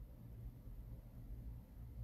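Faint room tone: a steady low hum with no distinct event.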